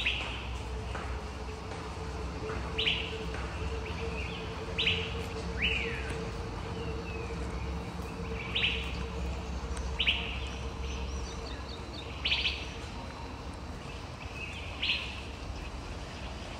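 A bird calling repeatedly in short, sharp notes that drop quickly in pitch, about every couple of seconds. A faint steady hum runs underneath.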